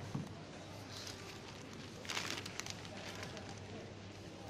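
Groceries being handled and bagged at a supermarket checkout: a thud just after the start, then a plastic bag rustling briefly about two seconds in, over a steady store hum and faint background voices.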